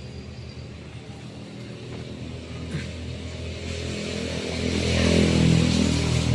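A motor vehicle's engine running steadily, growing louder through the second half.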